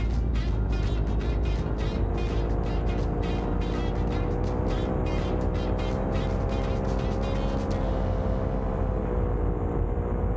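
Paramotor engine running steadily in flight, its pitch creeping up slightly midway.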